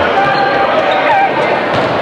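A basketball bouncing on a hardwood gym floor during play, a few sharp knocks over the steady chatter of a gymnasium crowd.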